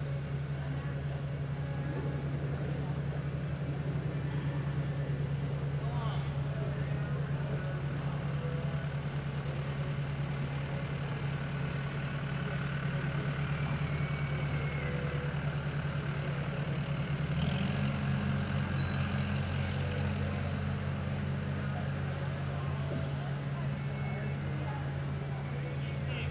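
A steady low mechanical hum that shifts in pitch and grows slightly louder about two-thirds of the way through.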